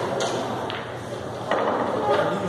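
Background murmur of voices in a large hall, with a few sharp clicks, the last and loudest about a second and a half in.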